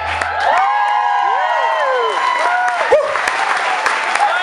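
The last acoustic guitar chord dies away in the first half-second, then an audience applauds and cheers, with several rising-and-falling whoops over the clapping.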